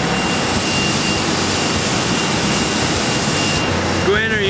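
Loud, steady rushing machine noise with a thin high whine running through it; the highest hiss eases off shortly before the end.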